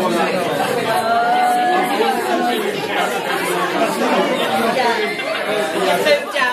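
Chatter of many people talking at once, overlapping conversations throughout.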